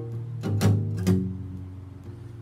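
Steel-string acoustic guitar playing a blues accompaniment: a few strummed strokes in the first second or so, then the chord left ringing and fading.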